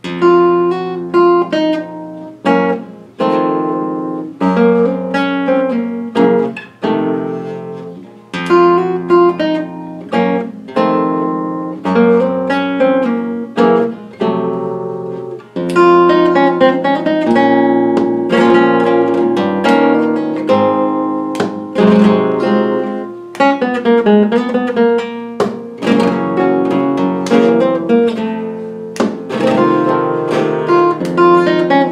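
Solo flamenco guitar playing a falseta for fandangos de Huelva in the E Phrygian ("por mi") mode, mixing strummed chords with plucked melodic runs. Phrases are separated by short pauses in the first half; the playing runs on without breaks from about halfway.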